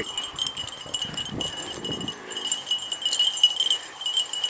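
Small bells on beagles' collars jingling continuously as the dogs work through the grass, a steady high shimmer.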